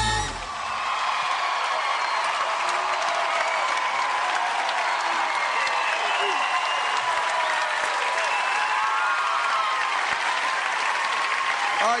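Studio audience applauding and cheering: steady dense clapping with shouts and whoops on top, starting as the band and singer stop just after the start.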